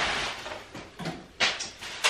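Clear plastic wrapping rustling and crinkling as a ring light is pulled out of it, in uneven bursts, the loudest about one and a half seconds in.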